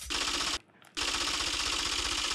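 Typewriter-key clatter sound effect, rapid even clicks in two runs with a short break about half a second in, as caption text types out on screen.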